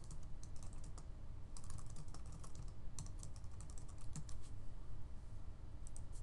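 Typing on a computer keyboard: quick runs of keystrokes with short pauses between them, over a low steady hum.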